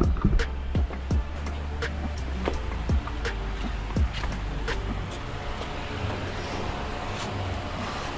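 A low rumble like a motor vehicle running nearby, which fades about five seconds in. Scattered light clicks and taps run through it, with faint music underneath.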